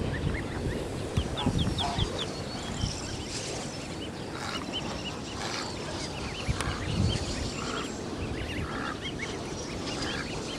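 Young goslings and ducklings peeping: many short, high chirps that rise in pitch, scattered through the whole stretch, over a low rumble with a few brief bumps.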